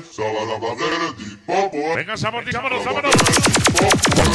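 A sonidero MC's voice shouting over the sound system. About three seconds in, it gives way to a fast, even run of sharp clicks, a sound effect at the change of track.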